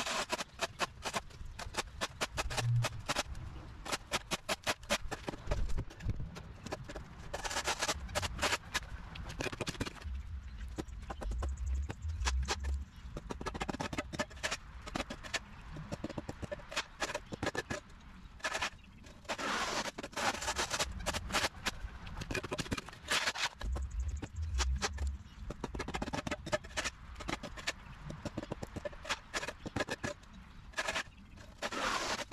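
Shovel blade chopping and scraping soil and turf off a concrete walkway: many short strikes and scrapes, several a second, in uneven spells.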